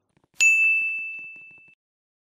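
A single bright, bell-like ding sound effect that strikes once and rings out with a clear high tone, fading away over about a second and a half.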